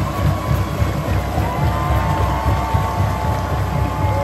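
Music playing in a football stadium over a loud, busy crowd background, with a held high note from about a second and a half in to near three seconds.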